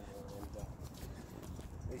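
Low, uneven rumble of wind buffeting the microphone, with a faint voice in the background early on.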